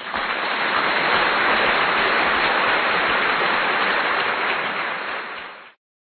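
Steady rushing road and wind noise inside a moving car's cabin, cutting off suddenly near the end.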